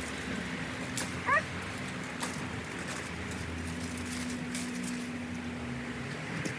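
Tomato plants rustling, with sharp snaps of stems as unripe green tomatoes are picked by hand, over a steady low drone. A short rising animal call sounds about a second in.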